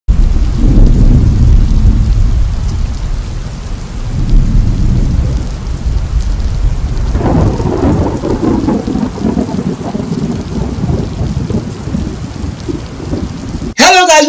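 Thunderstorm sound effect: loud rolling thunder over steady rain, with a fresh peal of thunder about seven seconds in.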